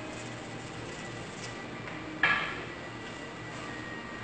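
A single sharp clack with a brief ring about two seconds in, over a steady faint background.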